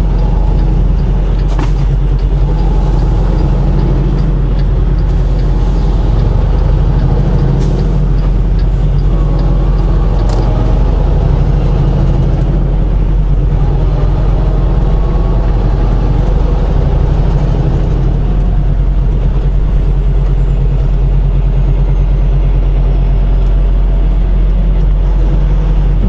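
Diesel semi-truck engine and road noise heard from inside the cab while driving, a steady, loud low drone.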